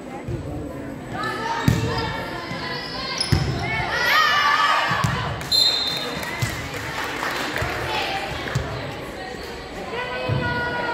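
A volleyball being hit and bouncing on a wooden gym floor during a rally: several sharp thumps a second or more apart, echoing in a large hall. Voices call out and cheer over them, loudest in the first half.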